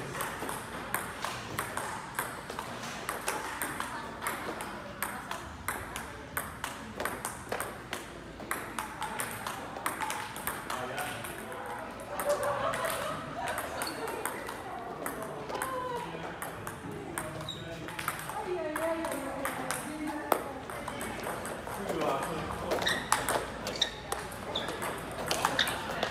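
Table tennis rallies: the plastic ball clicking off paddles and the table in a quick back-and-forth rhythm, with voices talking in the background.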